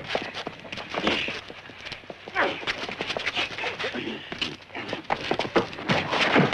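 Men fighting: a rapid, uneven run of knocks, thumps and scuffling footfalls, mixed with grunts and cries.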